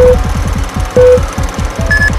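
Film-leader countdown sound effect: two short, loud beeps a second apart, then a higher tone near the end, over a crackling film hiss. Electronic music with a fast beat runs underneath.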